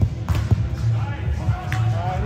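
Two sharp slaps of a volleyball being hit, about half a second in, over background music with a deep steady beat, with players shouting during the rally.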